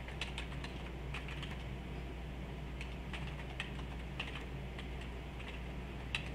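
Computer keyboard keys tapped slowly and irregularly, scattered single keystrokes, over a steady low electrical hum.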